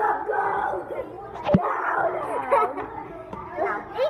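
Several children shouting and calling out together in an excited jumble of voices, with one sharp knock about one and a half seconds in.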